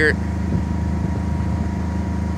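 A sailboat's engine running steadily at an even speed, a low, constant hum.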